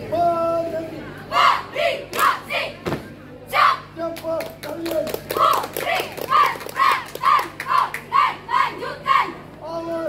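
A marching-drill squad shouting in unison: a long held shouted command at the start, then short barked syllables, settling into a regular chant of about two shouts a second from the middle on. Sharp thumps land with the shouts.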